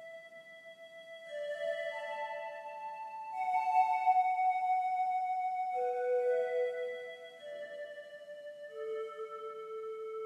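Piano playing a slow, quiet melody of single notes that starts out of silence, each note held and left ringing into the next.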